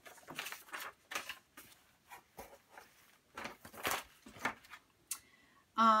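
Old newspaper pages in clear plastic sleeves rustling and crinkling in short, irregular bursts as they are handled and lifted.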